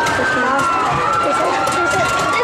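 Many riders' voices shouting and screaming over one another, with one long high scream held through most of the stretch.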